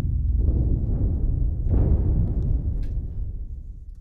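Deep low booms from the Spitfire Originals Cinematic Percussion sample library: one hits right at the start and a second comes under two seconds later, each with a long low decay that fades away near the end.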